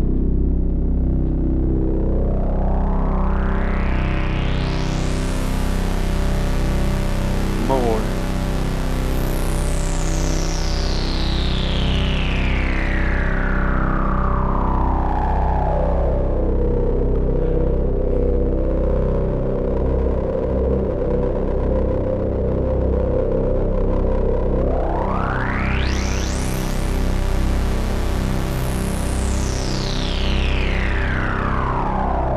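A resonant analog synth filter sweep on the G-Storm XaVCF, an OB-Xa-style AS3320 filter. It runs over a fat drone of two slightly detuned oscillators with pulse-width modulation and sub-oscillator, fed through a delay. The cutoff is turned by hand in a slow rise to fully open and a slow fall, holds low for several seconds, then makes a quicker rise and fall near the end.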